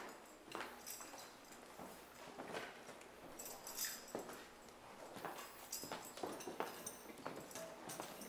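Faint, irregular footsteps on a hard floor, with scattered small knocks and rustling.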